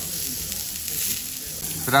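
Lamb sizzling on a ridged, dome-shaped cast-iron jingisukan grill pan: a steady hiss of meat and fat frying. A voice comes in near the end.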